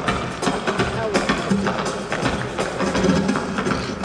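Live flamenco: a dancer's heels striking the stage in quick, repeated footwork over nylon-string guitar, with a voice singing.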